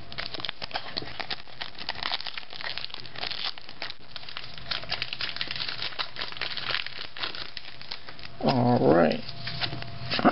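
Foil trading-card pack wrappers crinkling and tearing as a pack is handled and opened, a continuous dense crackle. A brief voice sounds near the end.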